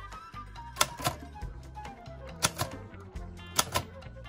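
Remington 5 portable typewriter being typed on: a few keystrokes in three quick pairs, each typebar snapping against the platen, with faint background music underneath.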